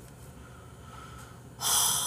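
A person blowing a sharp breath out through the nose close to the microphone, a sudden hissy snort about one and a half seconds in that fades over about a second.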